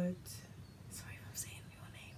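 A woman whispering under her breath: a few short, soft hissing sounds.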